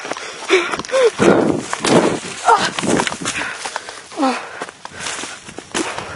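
Footsteps crashing through dry undergrowth at a run, with short breathless cries or gasps from the runner about three times.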